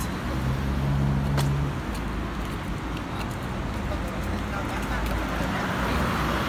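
City road traffic: a steady low rumble of vehicles on the street, with a steady engine hum in the first couple of seconds.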